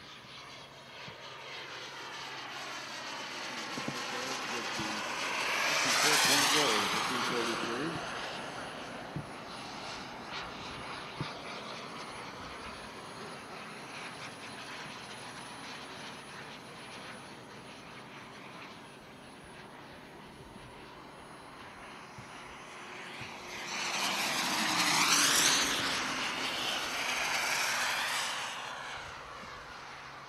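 Gas turbine engine of a radio-controlled model Lockheed T-33 jet flying past twice. It swells to a loud, high pass with the pitch sliding down as it goes by, about six seconds in and again near the end, and runs more quietly in between.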